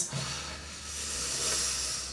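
Hands rubbing soft white cream between the palms and over the backs of the hands: a soft, steady swishing hiss.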